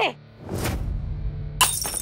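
A brief whoosh, then, about a second and a half in, a dish crashing and shattering with a ringing clatter, over steady background music.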